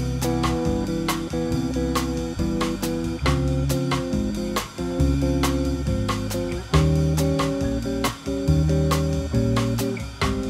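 Solo archtop electric jazz guitar comping through a standard with three-note shell voicings (Cmaj7, Dbmaj7, Eb7, Abmaj7): short plucked chord stabs in a swinging rhythm, with single bass notes on the low strings in between.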